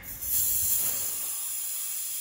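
Air hissing steadily out of a Chevrolet Silverado tire's valve stem as the valve core is held down, starting suddenly; the tire is being deflated to trigger the TPMS sensor relearn.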